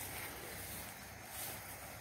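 Faint, steady outdoor background hiss with no distinct sound standing out.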